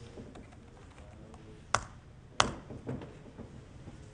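Typing on a computer keyboard, picked up by a room mic: scattered light keystrokes, with two sharper key strikes a little over half a second apart around the middle.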